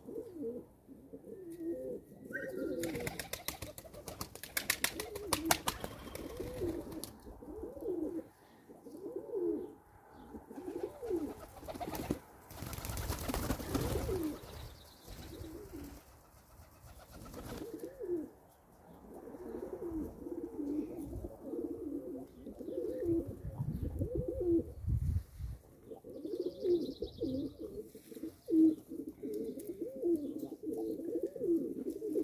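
A flock of domestic fancy pigeons cooing, one rolling coo after another with several birds overlapping, busiest in the second half. A run of light clicks comes early, and a short rustling burst comes about halfway through.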